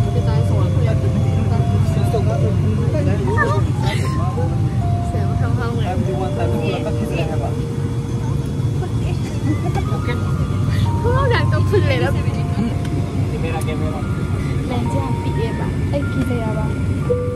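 Steady low drone of an airliner cabin on the ground, with people talking over it.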